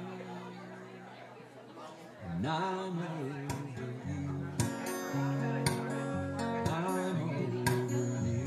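A solo acoustic guitar chord rings out and fades over the first two seconds. A sung note bending up and down comes in after about two seconds, and strummed acoustic guitar chords pick up again from about halfway through, with sharp strokes over ringing chords.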